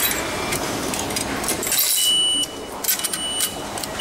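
Japanese station ticket machine dispensing: scattered metallic clicks and a coin-like jingle, then a high electronic beep about two seconds in and a second beep from about three seconds in that carries to the end. The beeps signal that the ticket and change are ready to collect.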